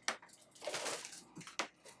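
Foam packing material being lifted off and handled, rustling softly about half a second in, with a few sharp clicks and knocks from the packaging.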